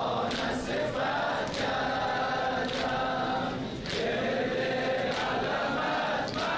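A congregation of men chanting a noha refrain together in unison, with sharp chest-beating strokes about once a second keeping the rhythm.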